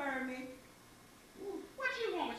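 A person's voice: a drawn-out sound with a sliding pitch at the start, fading out by about half a second in. After a quiet pause, talking starts again just before the end.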